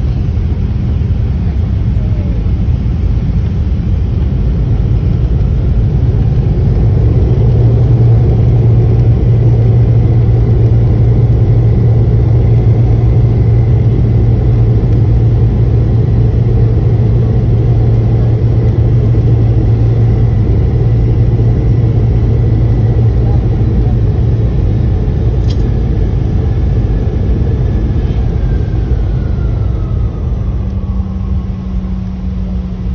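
Airliner cabin noise while the plane rolls on the ground after landing: a steady low engine drone over the rumble of the wheels on the pavement. Near the end a faint whine glides down in pitch.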